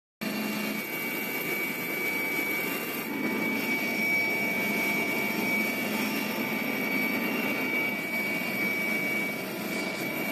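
Helicopter cabin noise in flight: steady engine noise with a high, steady whine running through it. It cuts in abruptly just after the start.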